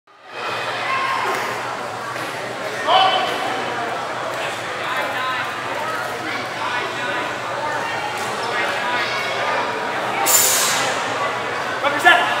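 Crowd chatter and overlapping voices echoing in a large hall, over a steady low hum, with a short sharp hissing noise about ten seconds in.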